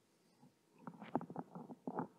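A quiet room, then about a second in a brief, irregular run of soft wet gurgles and clicks: a person's body noises picked up close to the microphone.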